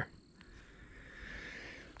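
Faint steady chirring of calling insects in the garden background, building slightly after a light click about half a second in.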